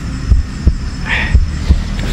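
Rapid low thuds, about three a second, with a short hiss about a second in.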